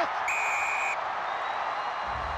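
Stadium crowd cheering a try, a steady roar of noise. About a quarter second in comes a single flat, high-pitched tone lasting under a second.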